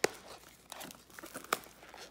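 Plastic shrink wrap being torn and crinkled off a trading card box, with two sharp snaps, one at the start and one about a second and a half in.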